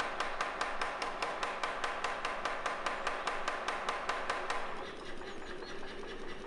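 Power hammer striking a hot steel bar on its die in a rapid, even run of blows, about five a second, stopping a little before the end.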